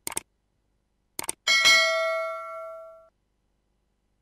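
Two quick clicks at the very start and two more just after a second in, then a bell ding that rings and fades out over about a second and a half: the mouse-click and notification-bell sound effects of a subscribe-button animation.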